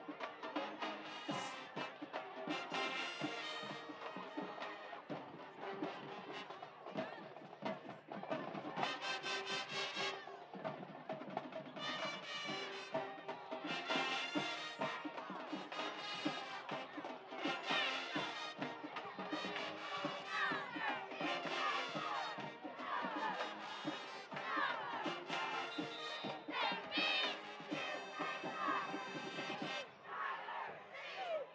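High school marching band playing in the stands, brass and drums with a steady beat, with a crowd shouting and cheering over it in the second half.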